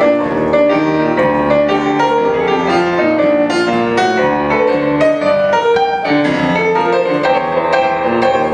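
A grand piano played live in a steady, continuous run of notes.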